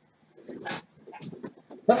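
Faint, wordless muttering and breathing from a man, running on and off, ending with the start of a spoken 'uh'.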